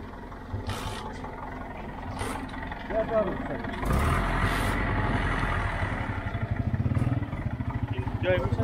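A vehicle engine running close by: it comes in suddenly and louder about four seconds in, then settles into a fast, even low chugging near the end. Brief voices are heard over it.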